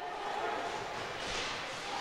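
Ice hockey arena ambience from live play: a steady murmur of crowd noise with the sound of the game on the ice, fading in at the start.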